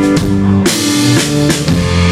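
A live rock band playing an instrumental passage: drum kit with bass drum under sustained electric guitar chords, with a sudden cymbal-like wash about two-thirds of a second in.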